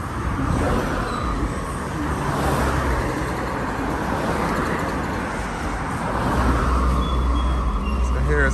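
Road traffic passing close by: cars driving past, their engine and tyre noise swelling and fading. A deep engine rumble builds near the end.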